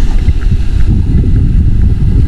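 Wind buffeting the camera's microphone: a loud, steady low rumble.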